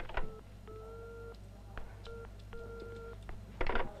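Telephone line tone heard over the handset, sounding short-long twice (a brief beep, then a longer one), the cadence of an Italian dial tone after the line goes dead. A few faint clicks fall between the tones.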